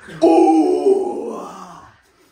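A young man's single long, loud groan of pain, acted in a mock-wrestling skit. It starts suddenly and fades off near the end.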